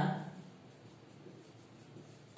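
Faint sound of a marker writing on a whiteboard.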